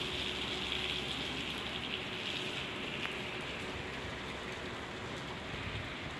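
Steady hiss of light rain falling.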